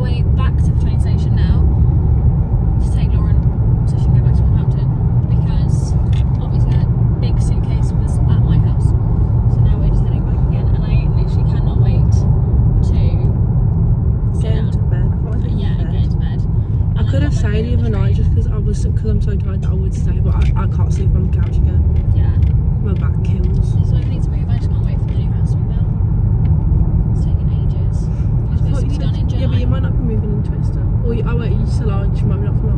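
Steady low rumble of car road and engine noise heard from inside the cabin while driving, with voices talking over it.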